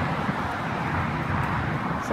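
Wind buffeting a phone's microphone: a steady, low rumbling noise with no distinct events.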